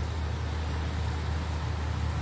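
Steady low rumble with an even hiss as red spinach cooks in a pan on the stove, with no stirring or clatter.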